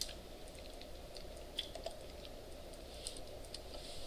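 Faint, irregular light clicking of computer keyboard typing over a low, steady room hum.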